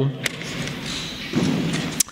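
Paper being handled at a pulpit microphone as a Bible is opened: a short tap near the start, a brief rustle of pages about a second and a half in, and a sharp click at the end.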